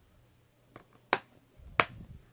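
White plastic DVD case being closed and snapped shut by hand: two sharp plastic clicks, a little over a second in and again near the end, after a faint tick.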